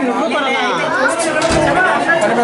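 Several people talking at once, with music underneath.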